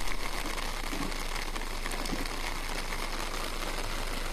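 Heavy rain falling as a steady, even hiss.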